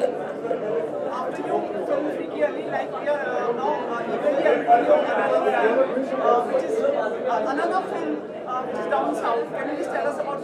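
Background chatter of many people talking at once, a steady hubbub in a large hall with no single voice standing out.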